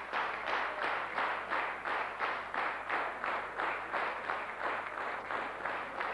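An audience clapping in unison, a steady rhythmic applause of about three claps a second.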